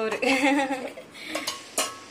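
Stainless-steel pot lids and vessels being handled, clinking together in a few short, sharp metal knocks with a brief ring in the second half.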